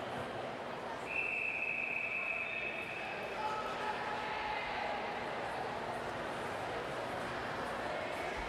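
A referee's whistle gives one long steady blast about a second in, lasting about two seconds: the long whistle that calls the swimmers up onto the starting blocks. Underneath, the steady murmur of the crowd in the pool hall.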